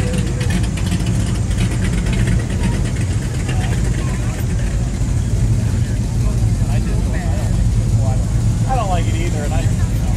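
Lamborghini V12 engine idling steadily, with voices talking in the background near the end.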